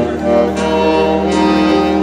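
Three saxophones playing a melody together in long held notes, changing note a few times.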